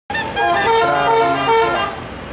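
Intercity bus's telolet horn, a multi-trumpet air horn playing a quick stepped tune, with several notes sounding together and changing about every quarter second.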